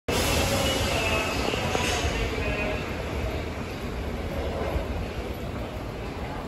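Subway train running in the station, its rumble gradually fading, with a thin squeal that dies out after about three seconds.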